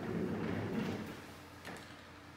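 Office chair casters rolling across the floor as the chair is pushed over to a desk: a low rumble that fades within about a second, then a light click near the end.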